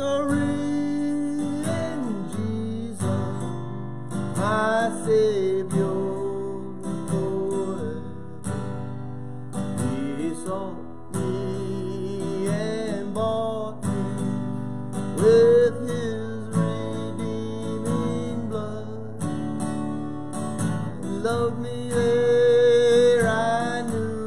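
A man singing a song while strumming chords on an acoustic guitar.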